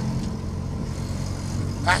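Small engine of an auto-rickshaw running steadily while driving, heard from inside the open cab, with a low even drone and road and wind noise.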